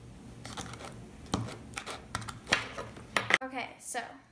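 A metal spoon and hands working sticky clear slime in a plastic bowl: irregular sharp clicks and short scrapes, with a voice coming in near the end.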